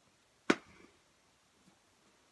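A plastic glue stick set down upright on the work table: one sharp knock about half a second in, with a short fainter clatter after it.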